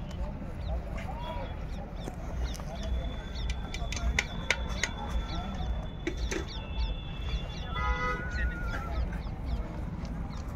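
Outdoor fair ambience: a low murmur of distant voices and rumble, with many short bird chirps and a brief honk-like call about eight seconds in.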